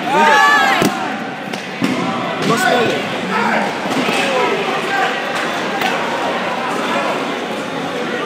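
Shouting voices from players and spectators echoing in a gymnasium during a dodgeball game, loudest in the first second, with a sharp thump a little under a second in and a few fainter thuds of dodgeballs later.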